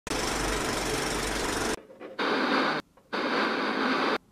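Intro sound effects: a film projector's rattle under a countdown leader for nearly two seconds, then two short bursts of TV static hiss.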